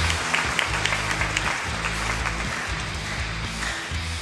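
Applause from a crowd, a steady patter of many claps, over quieter background rock music.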